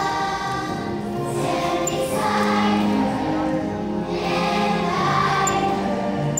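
A choir of young children singing together in long held notes that change pitch about once a second.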